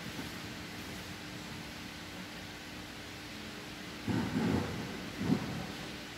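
Steady background hiss with a faint hum, broken by two dull low thumps near the end, the second shorter and sharper.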